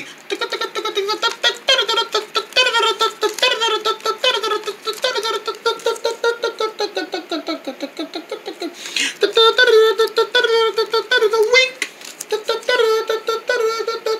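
A high-pitched voice singing a wordless dance tune in quick repeated syllables, with short breaks about two-thirds of the way through and again near the end.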